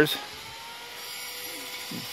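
Distant power tool running with a steady, faint whine that rises slightly in pitch, the noise of restoration work going on nearby.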